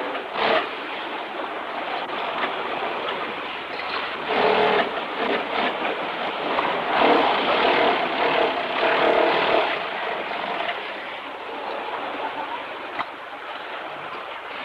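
Car-factory shop-floor din: the continuous mixed noise of assembly-line machinery. It gets louder around four to five seconds in and again from about seven to nine and a half seconds in.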